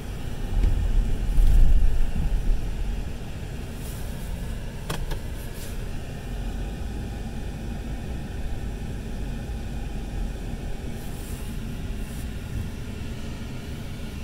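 Ford F450's 6.7-litre Powerstroke turbo-diesel V8, heard from inside the cab, pulling hard for the first two seconds or so as the truck drives out of mud. It then settles to a steady, lighter run. The rear limited-slip differential lets it hook up without four-wheel drive.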